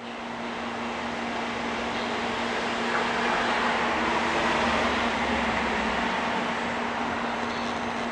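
A steady low machine hum under an even rushing noise that grows louder about three seconds in and eases off toward the end.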